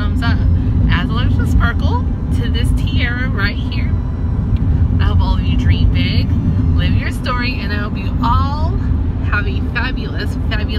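A woman talking over the steady low rumble of a moving car, heard inside the cabin.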